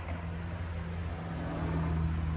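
A steady low motor hum, holding one pitch, with a faint hiss over it.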